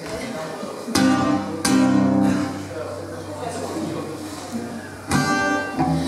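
Acoustic guitar chords strummed and left to ring, the opening of a song: one chord about a second in, another shortly after, and a third near the end.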